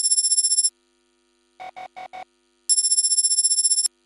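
Electronic ringing tone, trilling like a telephone ring, in two bursts. One stops just under a second in and a longer one sounds near the end, with four short quick beeps between them.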